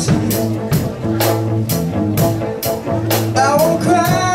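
Live rock band playing: a drum kit keeps a steady beat with hits about twice a second under electric guitar and sustained low notes, and a voice starts singing near the end.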